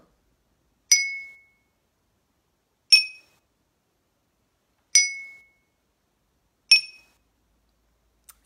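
Drinking glasses tuned with different amounts of water, struck with a wooden stick: four slow strikes about two seconds apart, each ringing and fading away. The pitches alternate low, high, low, high, a simple church-bell-like melody.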